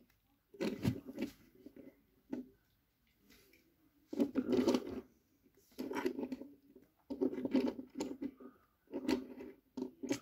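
Small die-cast metal toy vehicles being handled on a wooden surface: picked up, set down and slid, in about half a dozen short bursts of scraping and clicking with quiet gaps between.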